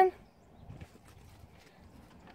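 Faint, scattered steps of a dog moving through deep snow, with a slightly louder patch just under a second in.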